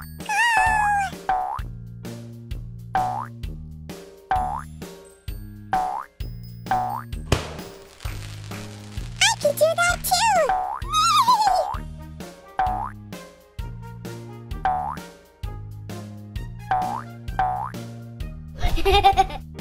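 Upbeat children's background music: short, bouncy plucked notes repeating over a steady bass line. Two brief wordless vocal bursts with gliding pitch rise over it, one at the start and a longer one about halfway through.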